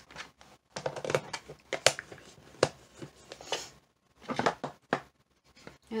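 Clear plastic storage box being handled and packed away: a scatter of short clicks, knocks and rustles as the bits and lid are put back and the box is set down.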